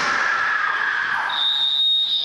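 Young kendo players' kiai: a long held shout, then a shrill high-pitched cry over the last half second or so.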